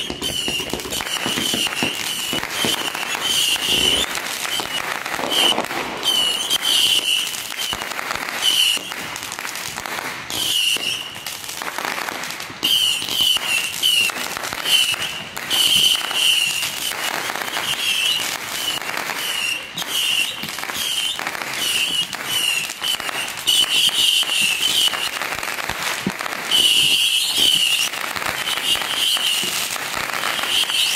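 Consumer fireworks going off without a break: dense crackling and sharp pops that begin abruptly, with a high shrill whistle recurring many times throughout.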